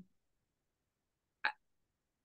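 Near silence, broken once about one and a half seconds in by a single very short mouth or breath sound from a woman.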